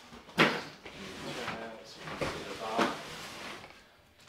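Knocks and scrapes as a new Frigidaire stainless-steel dishwasher is handled and turned around on its cardboard packaging. A sharp knock about half a second in is the loudest, followed by several smaller bumps.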